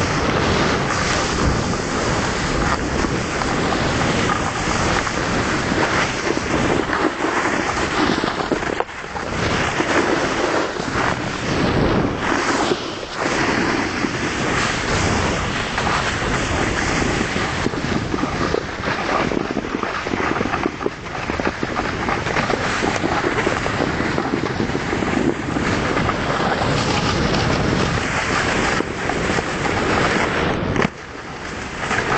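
Strong wind buffeting the microphone: a loud, rough rushing that gusts and drops back, with a few brief lulls.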